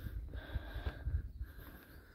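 Wind buffeting the microphone: an uneven low rumble that comes and goes in gusts.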